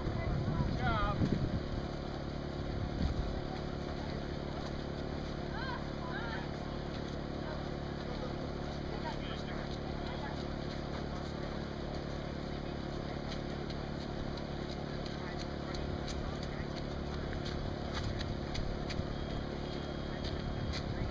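A steady low hum from a running machine, with faint distant voices now and then, most noticeable in the first couple of seconds.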